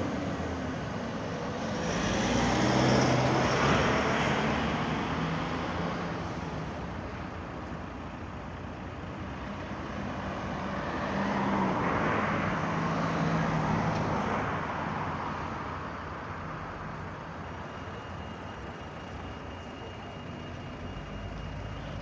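Road traffic: motor vehicles passing, their engine and tyre noise swelling and fading twice, loudest about three seconds in and again around twelve seconds in.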